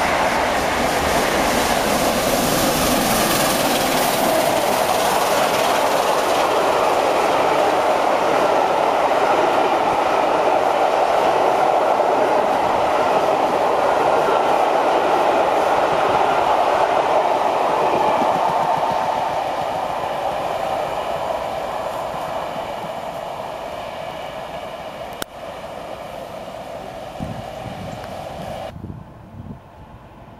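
Passenger trains rushing past at speed close by: first an electric multiple unit, then the coaches of A1 steam locomotive 60163 Tornado's express, a steady rush of wheels on rail with some clickety-clack. It fades gradually as the train recedes after about eighteen seconds, then cuts off abruptly near the end.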